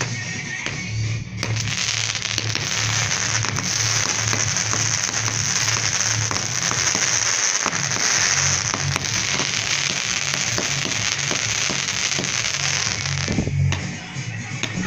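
Fireworks crackling and hissing densely over background music with a steady bass pulse. The crackle sets in about a second and a half in and cuts off suddenly near the end.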